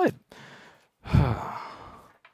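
A man's long breathy sigh into a close headset microphone, starting with a puff of breath about a second in and fading away; a softer breath comes before it.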